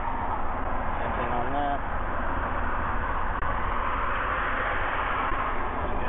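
Steady background rumble and hiss, with a brief faint voice about a second and a half in.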